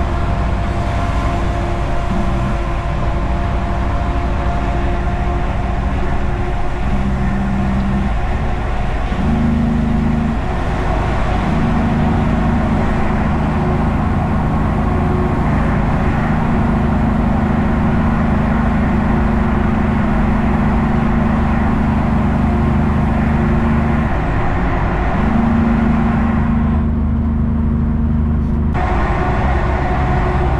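Kenworth K200 cabover's Cummins diesel engine heard from inside the cab while driving, a steady drone whose pitch steps up and down several times, over road noise.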